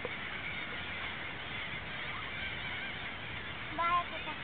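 Large flock of gulls and other seabirds calling all at once, a dense, steady chorus of overlapping cries. One louder call stands out near the end.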